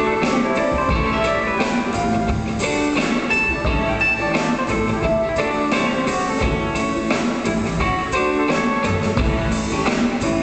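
Live rock and roll band playing an instrumental passage with guitar, bass and drums; no singing.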